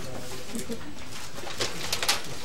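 Paper being handled as documents and a manila envelope are passed across a table, with two short crisp rustles near the end, over a low background murmur.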